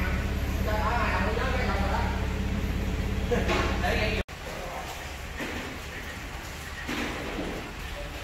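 Indistinct talking over a steady low machine hum that stops abruptly about halfway through. After that, a quieter workshop background with a few short bursts of voice.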